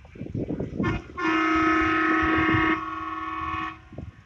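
A vehicle horn held in one steady blast of about two and a half seconds, loud at first and then dropping in loudness for its last second. Low noise from passing traffic comes before it.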